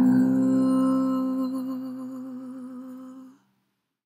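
A woman's voice holding the long final note of the song, steady at first, then wavering in vibrato as it fades, and stopping about three and a half seconds in.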